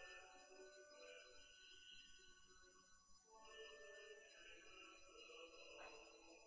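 Pipe organ playing faint, slow, sustained chords that change every second or two.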